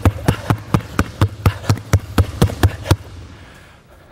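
Two basketballs dribbled hard and fast together on a hardwood gym floor, both balls striking at the same moment in a steady rhythm of about four bounces a second. The bouncing stops about three seconds in.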